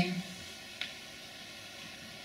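Quiet room tone with a steady hiss during a pause in a woman's talk. Her last word trails off at the start, and there is a single faint click a little under a second in.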